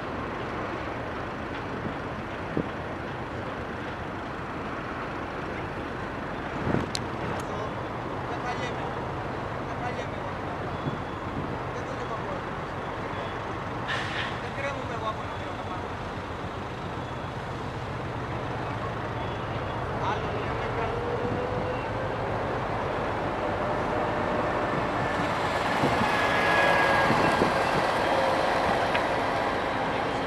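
Steady background of road vehicles running, with a low hum, a few sharp clicks and a faint gliding tone; a vehicle grows louder over the last few seconds, with a steady high whine, then eases off.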